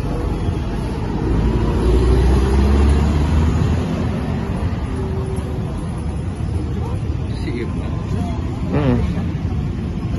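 Busy road traffic with a steady din. A vehicle passing close makes a deep rumble that is loudest between about one and four seconds in.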